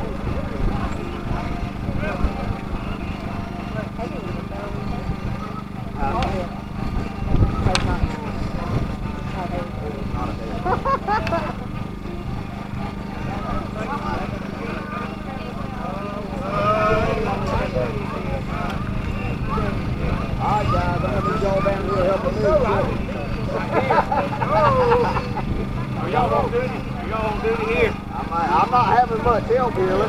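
Indistinct conversation of several people talking, picking up about halfway through, over a steady low hum and a low rumble.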